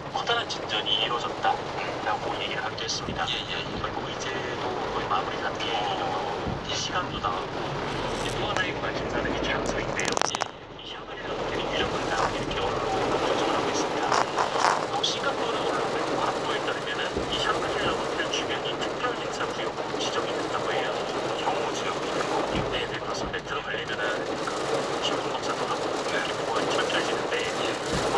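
Voices talking inside a moving car, over steady road and rain noise in the cabin.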